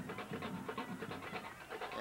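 Faint field ambience with indistinct distant voices and a dense crackle of small ticks, over a faint steady high tone.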